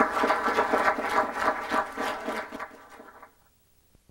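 Audience applauding at the end of a talk, fading out over the last second or so.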